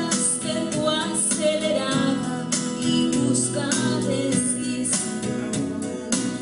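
A woman singing into a handheld microphone over instrumental accompaniment.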